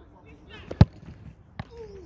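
A football kicked hard with a boot: one sharp, loud thud, followed less than a second later by a fainter knock.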